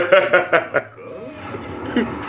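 Laughter and voices for about a second, then a quieter stretch with a faint rising sweep from the anime's soundtrack.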